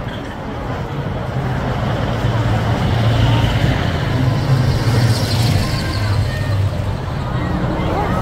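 Large buses driving past close by one after another: engine rumble and tyre noise that swell to a peak through the middle, ease off briefly near the end, then rise again as the next bus passes.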